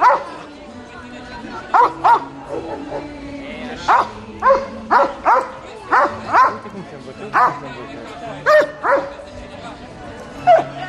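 Police dog barking repeatedly at its handler's direction: about a dozen sharp barks, many coming in quick pairs.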